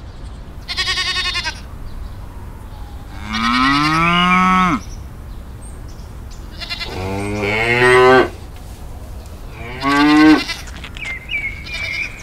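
Cattle mooing: four separate calls, a short one first, then two long drawn-out moos, then a short one near the end.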